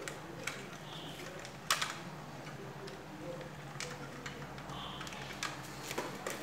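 Scattered sharp plastic clicks and taps as a Mitsubishi air conditioner's indoor control circuit board is worked free of its plastic housing and clips, the loudest click just under two seconds in.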